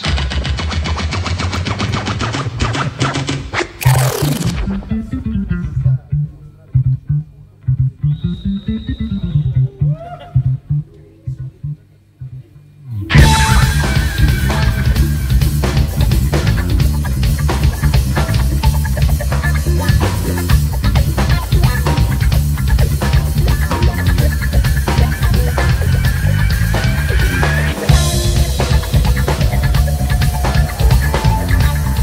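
Live band music inspired by 1970s black music, with a DJ on turntables: a dense groove ends in a falling sweep about four seconds in, a sparse bass line that slides up and down follows, and the full band comes in loud about thirteen seconds in.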